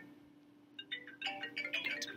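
A light melody of short chime-like notes starting about a second in, over a steady low hum.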